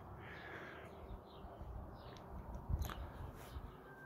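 Faint background ambience with a few faint, short bird calls.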